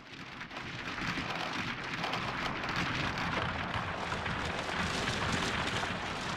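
Arturia Pigments software synthesizer playing its 'Crackling Stones' granular texture preset: a dense crackling noise texture that swells in over the first second and then holds steady.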